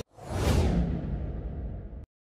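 A whoosh transition sound effect: a rush of noise swells up within the first half second over a low rumble, then fades with its hiss sinking lower, and cuts off suddenly.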